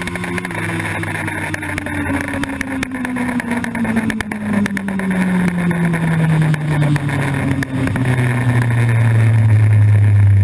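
Inline-four sportbike engine off the throttle in fifth gear, revs falling steadily from about 10,000 to about 4,000 rpm as the bike slows. The engine note drops smoothly in pitch, then levels out near the end.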